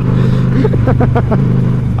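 Honda Shadow 750 cruiser's V-twin engine running at a steady road speed, an even low drone, with wind rushing past the microphone.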